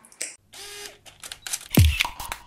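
Camera-style sound effects: a short mechanical whir and a run of shutter-like clicks, then a loud deep boom falling in pitch near the end as an outro music track begins.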